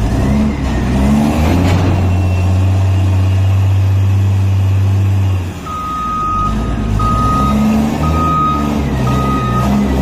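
Hyster reach stacker's diesel engine running, with a steady low hum through the first half. About halfway in its reversing alarm starts, a single-pitched beep repeating about once a second.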